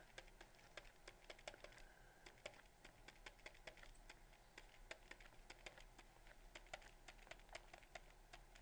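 Faint, irregular tapping and scratching of a stylus writing on a pen tablet, several small clicks a second.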